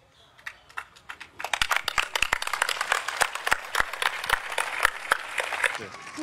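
A crowd of children clapping, starting about a second and a half in, with some sharp claps standing out from the rest, and voices mixed in.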